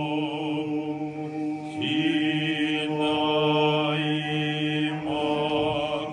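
Orthodox liturgical chant, sung by voices holding long sustained notes that move to a new pitch every second or two.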